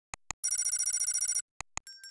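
Subscribe-button animation sound effects: two short clicks, then a rapid rattling bell ring lasting about a second, two more clicks, and a bright ding near the end that rings on.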